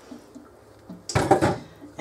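A glass measuring cup clattering as it is set down, a short burst of several knocks a little past a second in.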